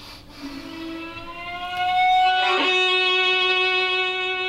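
Solo violin playing slow bowed notes. A held high note rises slightly in pitch and grows louder about halfway through, then a new bow stroke starts a sustained lower note.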